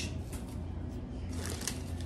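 Plastic marshmallow bag rustling in short, scattered crinkles as marshmallows are taken out and set on a parchment-lined baking tray, over a faint steady low hum.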